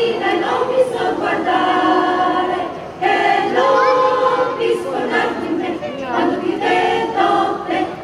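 A small female choir of girls and women singing together, holding long notes, with a short break between phrases about three seconds in.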